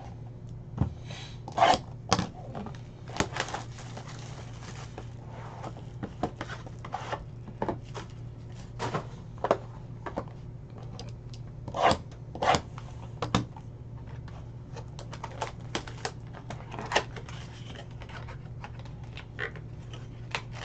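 Sealed trading-card pack wrappers crinkling and tearing open, with cards and packs being handled: scattered short clicks and rustles over a steady low hum.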